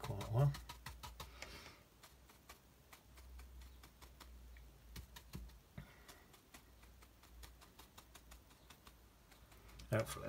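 Light, irregular taps of a watercolour brush dabbed onto a sketchbook page, several a second, stippling in a bush.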